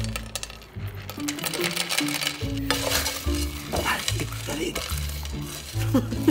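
Light rattling of snack puffs shaken out of a plastic canister into a woven basket, over background music with a steady bass line.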